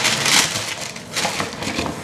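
Packaging being handled: paper and wrapping rustling and crinkling, loudest in the first half second and again a little after a second in, with a few light knocks.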